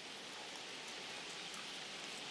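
Faint, steady outdoor background ambience: an even hiss with no distinct events.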